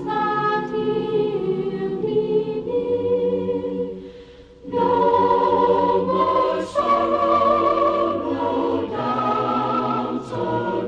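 Family chorus singing a gospel hymn in sustained harmony. The voices drop away briefly about four seconds in, then come back in louder.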